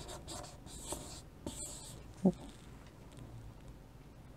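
Chalk scratching on a blackboard as words are written and circled, the strokes busiest in the first two seconds and fainter after. About two seconds in there is a single short vocal sound.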